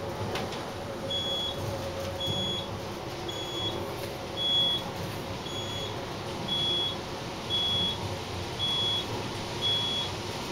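Otis high-rise traction elevator cab travelling upward at speed, with a steady low ride rumble. Over it, the cab's audible signal gives a short, high electronic beep about once a second, starting about a second in.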